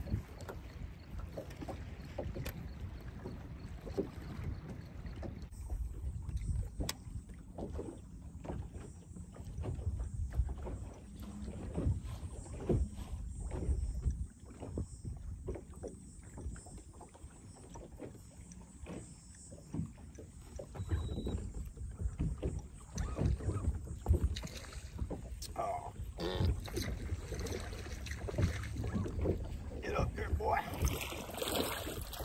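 Small waves lapping and slapping irregularly against a bass boat's hull, over a low wind rumble on the microphone.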